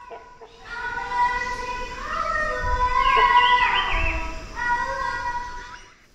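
A cappella singing: long held high notes that swell to a peak about three to four seconds in, where a higher part moves up and down through a few notes, then fade out near the end.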